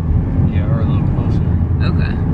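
Steady low road and engine rumble inside the cabin of a moving car, with faint voices.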